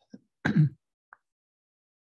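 A person clearing their throat once, briefly.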